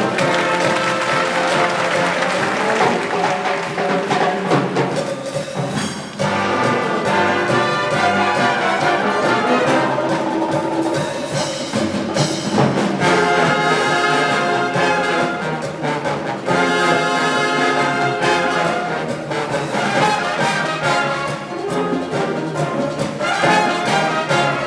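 Concert wind band playing, with trumpets and other brass to the fore over clarinets, conga and drum kit, with a brief dip about six seconds in.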